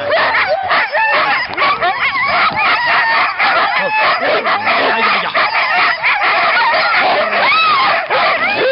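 A team of sled dogs barking and yelping together in a dense, nonstop chorus, the excited noise of a dog team being harnessed to the gangline before a run.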